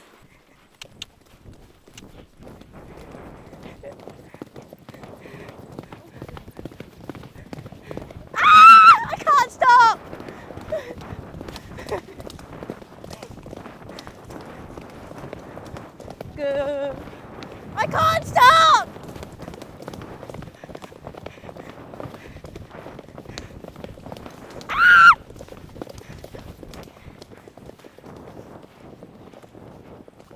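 Horses' hooves beating steadily on a dirt forest track as several horses are ridden along it. Three loud, high, wavering calls break through: two about a third and halfway through, and one shorter near the end.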